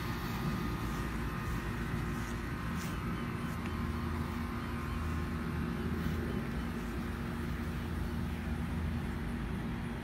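Steady low outdoor background rumble with a faint constant hum. There are no distinct sounds in it.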